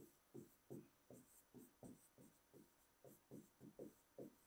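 A pen on an interactive touchscreen display writing words by hand: a faint series of short strokes, about three a second.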